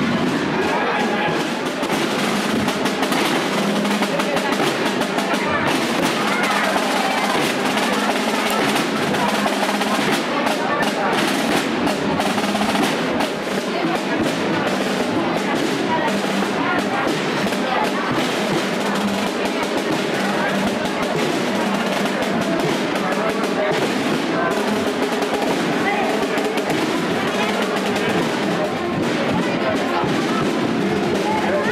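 Snare drums playing rapid rolls and beats, with music and the voices of a crowd throughout.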